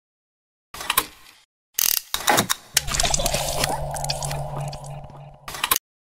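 Mechanical-sounding clicks and ratcheting in short bursts, then a falling sweep. After that a steady low hum runs under rapid clicking for about three seconds and cuts off suddenly near the end.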